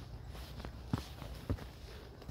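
Footsteps of walking shoes on a dry dirt trail strewn with dry grass and fallen leaves, with two clearer steps about a second in and about half a second later.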